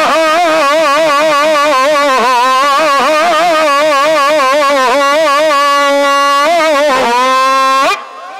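A man's long sung vowel, amplified through a microphone and loudspeakers, held on one pitch with a fast, wide vibrato. About five seconds in it steadies into a plain held tone, dips and slides back up near the end, then cuts off abruptly.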